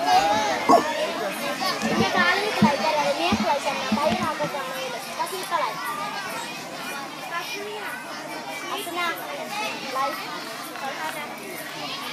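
Many children's voices chattering and calling at once, a crowd of schoolchildren talking, with a few short thumps in the first four seconds.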